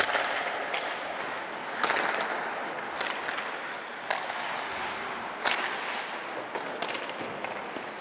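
Ice hockey skates scraping across the ice in a steady hiss, with sharp clacks of sticks hitting and passing the puck several times.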